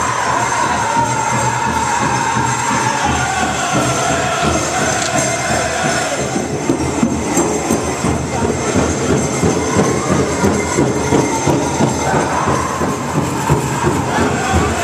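Pow wow drum group playing: a high sung line that falls over the first few seconds, over a steady, fast drumbeat that comes through more strongly from about halfway.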